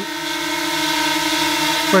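DJI Mini 2 drone hovering close by, its four motors and propellers giving a steady whine made of several held tones over a rushing hiss.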